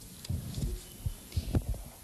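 Microphone handling noise: a handheld microphone being picked up and gripped, giving several dull, irregular low thumps with a small click about one and a half seconds in.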